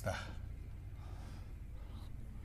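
A man's short audible breath right at the start, trailing off the end of a spoken word, then a low steady room hum with faint background noise.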